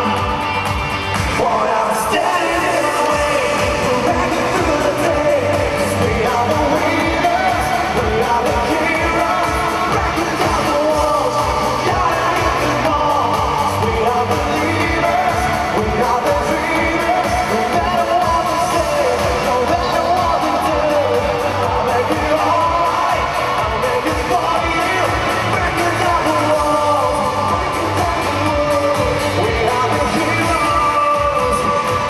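Pop-rock song at full volume: a male lead voice singing over electric guitars and drums with a steady beat, filling a large hall.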